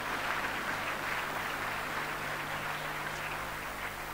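A large audience in a hall applauding with steady, even clapping.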